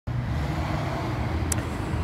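Steady low rumble of road traffic, with a brief click about a second and a half in.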